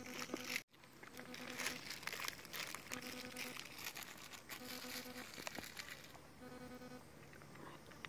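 Faint crinkling and rustling of a plastic snack wrapper being handled and dropped onto the ground. A faint low hum comes and goes about five times.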